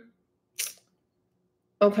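Near silence, broken by one brief soft hiss about half a second in, then a spoken 'okay' at the very end.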